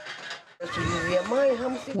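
A person's voice in one long, drawn-out phrase of wavering pitch, starting about half a second in.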